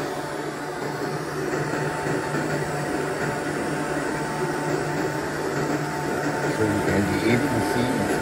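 xTool F1 laser engraver running with its RA2 Pro rotary while engraving a tumbler: a steady machine hum with a constant thin whine over it.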